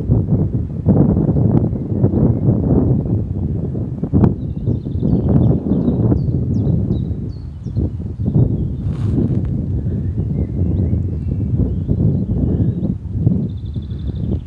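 Wind buffeting the microphone in uneven gusts, with small birds chirping faintly above it.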